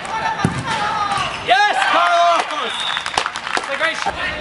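Players shouting and yelling during a soccer game, with sharp knocks from the ball about half a second in and twice around three seconds in.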